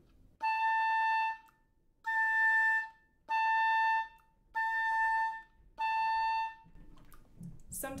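Oboe playing five held notes of the same high A, each about a second long with short breaths between, switching between the standard fingering and the harmonic fingering; the harmonic-fingered A has a rounder, more covered tone.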